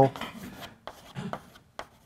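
Chalk scraping on a blackboard: one longer scratchy stroke, then a few short strokes and taps as a small diagram is drawn.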